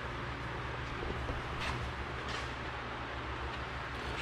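Steady low hum with an even background hiss, and a couple of faint brief scuffs about midway through.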